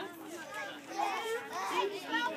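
Several children talking and calling out over one another, with no words standing out.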